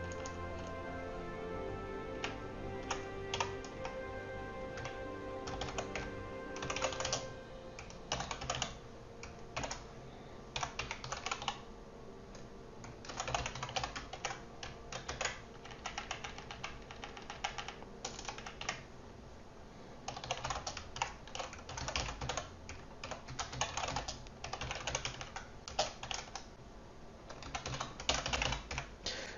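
Typing on a computer keyboard: irregular bursts of quick keystrokes with short pauses between them, busiest in the second half.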